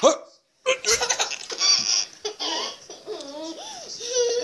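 A toddler girl laughing and giggling, with a short break to silence about half a second in.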